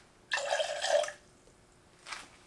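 Lemon juice poured from a steel jigger into a stainless steel cocktail shaker tin, a short splashing pour of about a second that starts a moment in.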